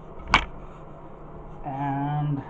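A single sharp knock from a metal spoon, about a third of a second in, as powder is spooned into a small stainless steel cup on a scale.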